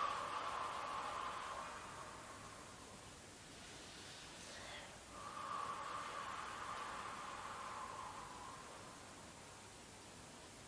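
A woman's long, soft exhalations through the mouth, breathing out on the effort of each leg lift: one fading out over the first two seconds, a second starting about five seconds in and lasting about three seconds, with a faint breath in just before it.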